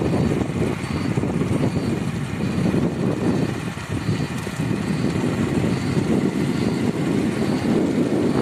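Steady low rumble of a vehicle driving along a road, heard from inside the moving vehicle, dipping briefly about four seconds in.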